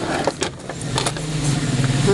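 Scattered clicks and knocks as a stand fan's motor and plastic stand are handled, over a steady low hum.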